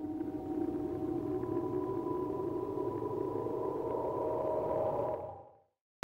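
Synthesized logo-intro drone: several steady held tones over a low rumble, swelling in and fading out near the end.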